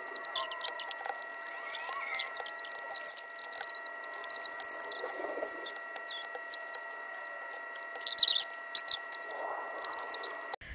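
Paper sticker sheet and its backing crinkling and crackling in quick, irregular little crackles as stickers are peeled off by hand, over a faint steady high whine.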